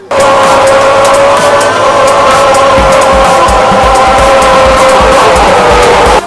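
A quad bike's tyres squeal steadily as it spins in a burnout on asphalt. The squeal is one sustained high note over the running engine. About three seconds in, a fast thumping bass beat of music joins it.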